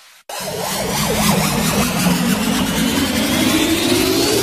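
Intro sound effect of a turbocharger spooling up: a whine that rises steadily over a dense rushing noise, starting a moment in and building throughout.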